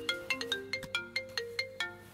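Mobile phone ringtone signalling an incoming call: a quick, repeating melody of short notes that each die away fast.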